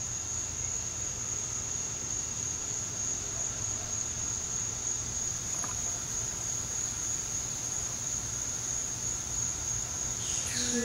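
A steady, high-pitched insect trill holding one unbroken pitch, over a faint low rumble.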